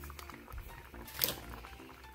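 Granulated sugar pouring from a measuring cup into a pot of simmering tomato syrup: a soft, quiet patter over the low bubbling of the pot, with one small sharp click a little past the middle.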